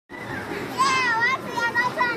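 A child's high-pitched voice, in two short wordless vocalisations with a bending pitch, over steady background noise.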